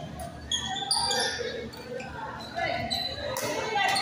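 Badminton play on an indoor court: several sharp racket strikes on the shuttlecock and short squeaks of shoes on the court floor, echoing in a large hall, with voices in the background.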